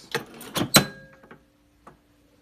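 Manual clamshell heat press being clamped shut on a shirt for a transfer: a quick run of clacks and knocks from the upper platen and its lever, with one loud clunk as it locks down, then a few lighter ticks.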